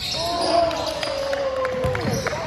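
A basketball bouncing on a hardwood gym floor during play, several knocks in the second half. Over it runs one long drawn-out shout from a voice, slowly falling in pitch.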